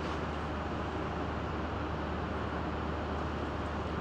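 Steady room tone: an even hiss over a constant low hum, with nothing else happening.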